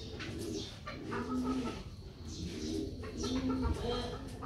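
Birds calling in the background: a low call repeating roughly once a second, with fainter higher chirps between.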